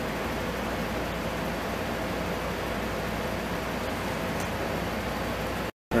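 Steady room noise: an even hiss with a low hum underneath, broken near the end by an abrupt moment of dead silence at an edit.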